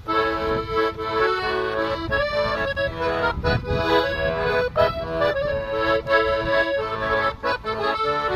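Piano accordion playing a Chilean tonada: held chords and melody over rhythmic bass notes, in a steady beat.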